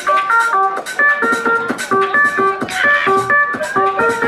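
Live techno: a synthesizer plays a quick, repeating pattern of short stepped notes over a steady beat with crisp ticks.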